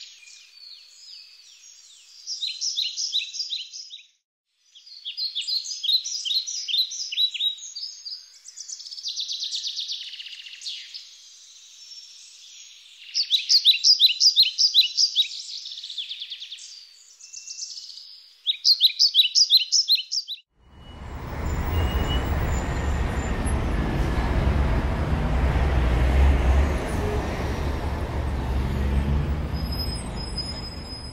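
Songbirds singing, a run of quick trilled phrases with short pauses between them. About twenty seconds in this cuts off abruptly and gives way to steady city street traffic noise with a low rumble.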